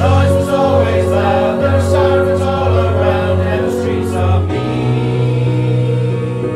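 An amateur mixed choir of men and women singing held, sustained chords. The low notes change to a new chord about four and a half seconds in.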